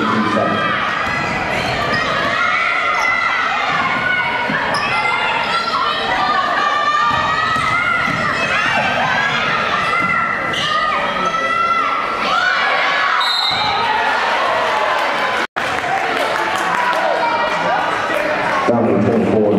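Girls' high school basketball game in play in a school gym: the ball bouncing on the hardwood court, players' shoes and calls, and spectators' voices, all echoing in the hall. The sound drops out for an instant about three-quarters of the way through.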